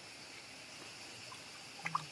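Faint, steady outdoor background hiss with a steady high-pitched band, and a brief short sound just before the end.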